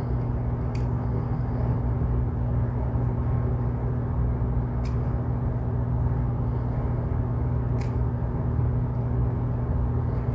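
Steady low hum and rumble with a few faint clicks of a metal pick working at a small steel e-clip on a gear.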